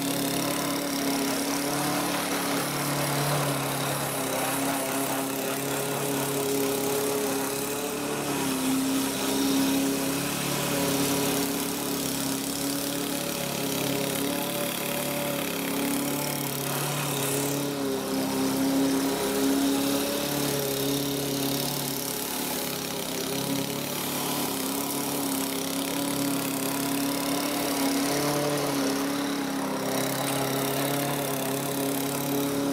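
Craftsman AWD self-propelled walk-behind lawn mower's small gasoline engine running steadily while cutting grass, its pitch wavering slightly as the load changes.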